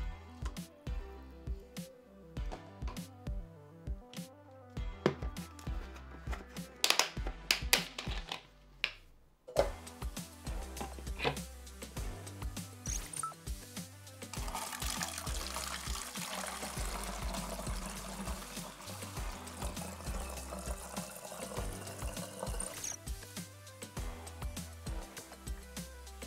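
Background music with a steady bass beat, with a few light knocks and clicks in the first half. About halfway through, water is poured through a plastic funnel into a plastic soda bottle, splashing steadily for about eight seconds before stopping.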